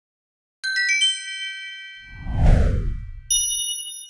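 Intro logo sound effect: a quick rising run of bell-like chimes, then a whoosh that sweeps down into a low rumble, the loudest part, and a final ringing chime chord.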